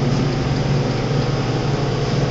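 Steady low mechanical hum with an even hiss underneath, unchanging throughout.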